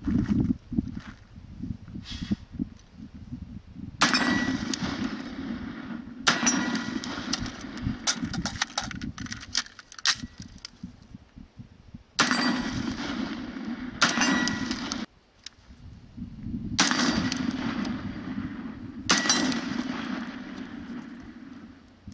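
Shots from a 10.5-inch AR-pattern short-barreled rifle in 7.62x39, starting about four seconds in: a quick string of shots, then single shots a couple of seconds apart. Each is followed by a long ringing tail with a metallic ring, as of hit steel targets.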